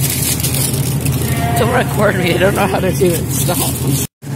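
Steady low machine hum of supermarket refrigeration or ventilation, with a high-pitched voice heard in the middle.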